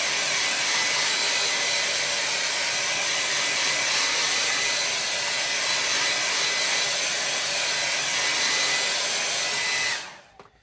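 Handheld hair dryer running steadily, blown over a wet watercolour painting to dry it: an even rush of air with a faint high whine. It switches off abruptly right at the end.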